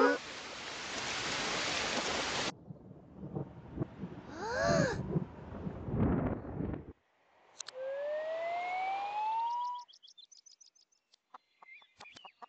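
Cartoon sound effects played backwards: a steady rain hiss that cuts off suddenly about two and a half seconds in, then a few short sounds and a brief voice-like call, a low rumble, a rising whistle-like tone about eight seconds in, and a few faint clicks.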